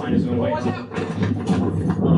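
Indistinct speech from a video playing back, over a steady low background tone.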